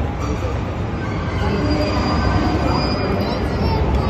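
KiHa 183 series diesel train pulling slowly into a station: a steady low engine rumble that grows gradually louder as it approaches, with a thin, high wheel squeal from about a second and a half in to about three seconds.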